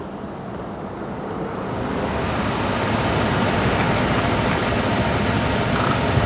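A minivan driving up, its engine and tyre noise growing louder over the first few seconds, then holding steady.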